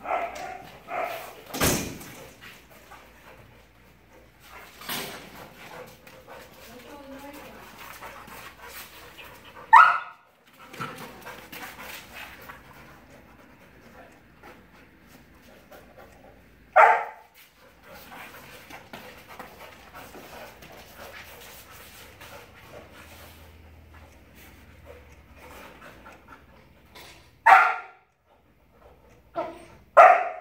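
Two dogs play-wrestling, with scuffling and mouthing sounds and a few short, loud single barks spaced several seconds apart.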